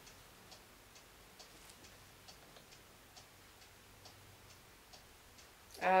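Faint, regular ticking, about two ticks a second, over quiet room tone.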